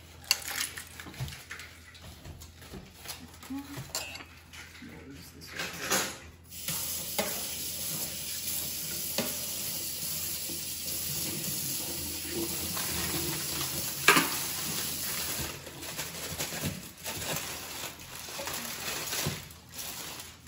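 Kitchen tap running into a stainless-steel sink for about nine seconds while a utensil is rinsed. Clinks and clatter of cutlery and dishes come before and after, with one sharp knock near the end of the running water.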